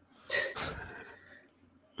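A man clearing his throat once: a short rough burst about a third of a second in that trails off over the next second.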